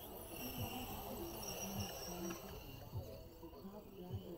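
Radio-controlled 1/8-scale short course trucks racing on a dirt track. Their motors make a steady high-pitched whine that fades after about halfway, with faint low voices underneath.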